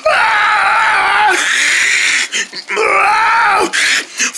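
A person's voice screaming in a few long, high, held cries with short breaks between them, the war cries of a play fight acted out with toys.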